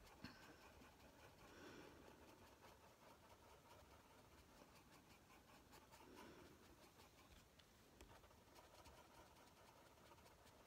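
Faint scratching of a Prismacolor coloured pencil on paper, worked in tiny circles and pressed quite hard, barely above near silence.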